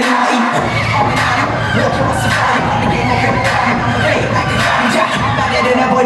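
Audience cheering and shouting over a loud hip hop dance track; a heavy bass beat kicks in about half a second in.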